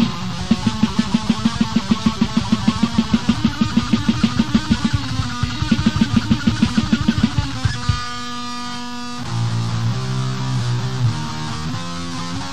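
Instrumental death metal from a distorted electric guitar and drums. A fast, even pounding riff runs at about five to six strokes a second, breaks about eight seconds in for roughly a second of a single held, ringing note, then gives way to a slower riff.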